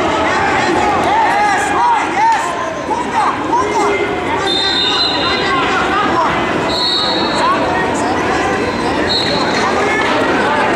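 Wrestling shoes squeaking on the mat in many short chirps as the wrestlers move and grapple, over shouting and chatter from coaches and spectators in the gym.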